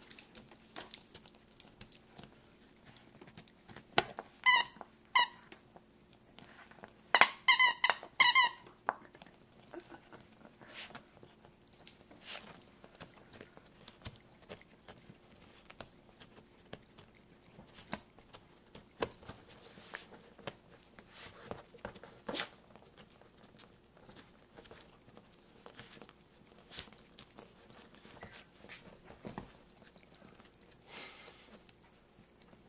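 A small dog chewing and tearing at a plush squirrel squeaky toy. The squeaker gives two short squeaks about four and five seconds in, then a quick loud run of squeaks about seven seconds in. Soft chewing and rustling clicks go on throughout.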